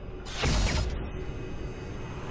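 Sound effects from an animated logo outro: a whoosh that swells up about half a second in and fades, over a mechanical-sounding sound-design texture and music.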